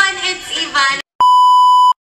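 A voice speaking, then a sudden cut to silence and a steady, loud, high-pitched electronic beep held for under a second, an edited-in bleep that stops abruptly.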